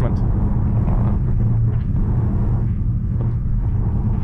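Steady tyre rumble and wind noise inside the cabin of a Voyah Free electric SUV cruising at motorway speed.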